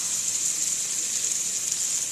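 Chicken breasts, bell peppers and shredded cabbage sizzling in a hot grill pan: a steady, even hiss.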